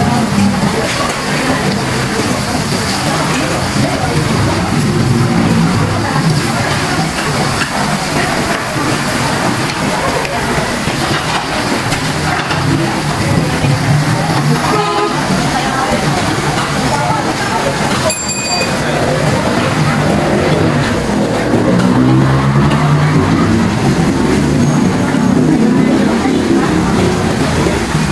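Pork sizzling in a grill pan on a tabletop butane stove, under loud chatter of diners. A couple of sharp clicks of metal tongs against the pan come past the middle.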